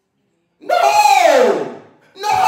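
A man's amplified voice through the church microphone: one long hollered cry that starts about half a second in and falls steadily in pitch, in the sung, stretched style of a preacher's whooping.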